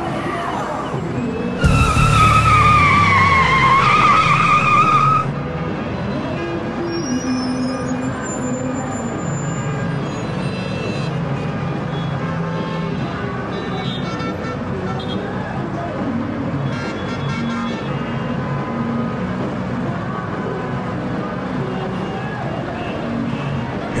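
Traffic-jam ambience: a steady bed of running car engines, with a loud wavering tyre screech from about two seconds in that stops abruptly some three seconds later.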